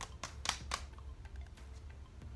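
Hands working moisturizer into the face: a handful of sharp little clicks and taps in the first second, fainter ones after, over a low steady hum.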